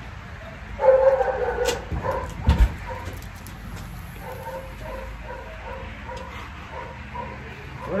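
Dog barking repeatedly, short faint barks about twice a second through most of the clip. A brief voice-like sound comes about a second in and a low thump a little after two seconds.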